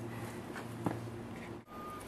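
Faint handling sounds of gloved hands pulling braised duck legs apart on a plastic cutting board, with a couple of soft ticks, over a steady low room hum. The sound drops out briefly near the end.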